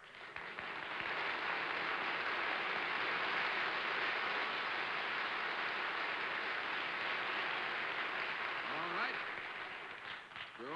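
Studio audience applauding, building over the first second, holding steady and tapering off near the end.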